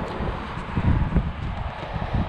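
Wind buffeting the microphone, with low rumbles about a second in and again near the end, over faint outdoor background noise.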